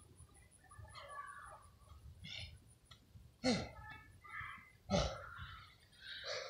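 A person's short vocal sounds, likely groans or gasps, broken and faint, with two louder ones whose pitch falls sharply about three and a half and five seconds in.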